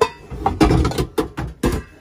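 Metal pots and pans clanking and knocking against each other as they are shifted in a stacked cabinet, about five sharp knocks with rattling in between.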